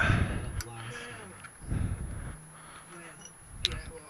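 Faint talk from a radio playing in the background, with two sharp clicks: one about half a second in and a louder one near the end.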